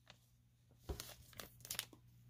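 Foil wrapper of a trading card pack crinkling faintly as it is handled, in a few short crinkles in the second half.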